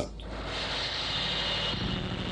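Industrial noise music made with tools and sound generators: a steady machine-like drone over a low rumble, with a hissing layer that swells in about half a second in.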